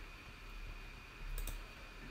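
A couple of faint computer mouse clicks about a second and a half in, over quiet room background.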